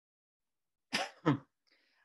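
A man coughs twice in quick succession about a second in, two short coughs.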